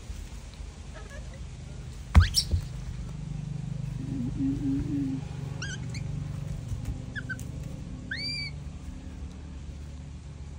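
Young monkeys giving short, high, squeaky calls: a quick run of chirps in the middle and two arching squeals near the end, over a steady low hum. A sharp knock with a fast rising squeak, the loudest sound, comes about two seconds in.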